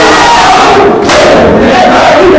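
Group of men chanting a noha together, loud, with the noise of matam, their hands beating on their chests, growing stronger about a second in.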